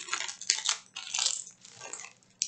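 Handling noise from a diamond painting kit: a few short crinkly rustles of plastic packaging, with a light rattle, coming in three spells.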